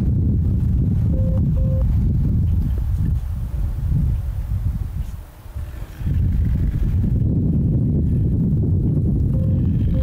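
Wind buffeting the microphone outdoors: a loud, steady low rumble that eases off briefly about halfway through. Two faint short beeps can be heard about a second in.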